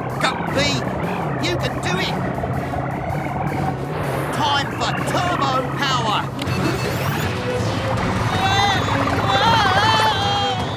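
Cartoon background music over the steady low hum of a small submarine's engine. Near the end, wavering warbling tones come in.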